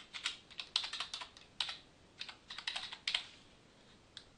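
Typing on a computer keyboard: a quick, irregular run of keystrokes that stops a little before the end.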